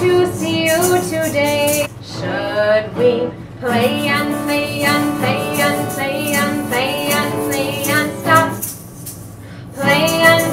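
A woman singing children's songs while strumming an acoustic guitar. The music drops briefly twice early on and goes quieter for about a second near the end before picking up again.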